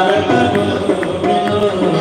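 Live music: a singer holding a melodic line over instrumental accompaniment with a steady low note underneath.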